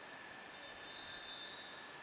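Small high-pitched bells jingling and ringing for just over a second, starting about half a second in, over faint room tone.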